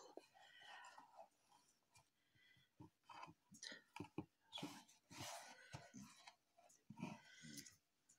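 Faint handling sounds: soft clicks and rustling as embroidered mesh fabric is smoothed and pressed onto a cardboard box by hand.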